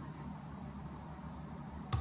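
Faint, steady low hum and hiss of room tone, with no distinct sounds.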